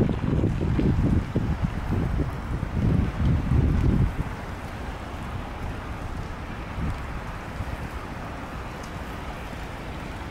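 Wind buffeting the microphone in gusts of low rumble, dying away about four seconds in and leaving a steady faint background hum.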